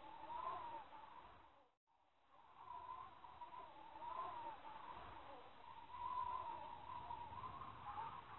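Faint, long wavering calls whose pitch slowly rises and falls. They fade out briefly about two seconds in and then fade back in, over a low rumble.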